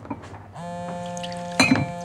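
A mobile phone ringtone starts about half a second in: a steady held chord, then shorter notes near the end.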